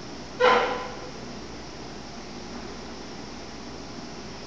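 A single short, loud pitched call about half a second in, fading quickly, over a steady background hiss.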